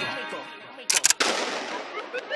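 A quick burst of three or four gunshot sound effects about a second in, with a long fading reverberant tail. They are used as a break in a vocal dance track.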